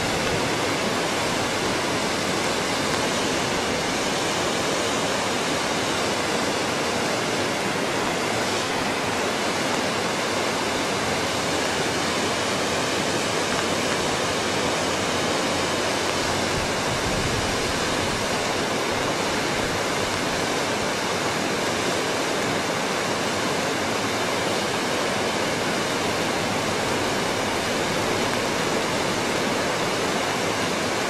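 Rushing river water: a steady, even rush that does not change.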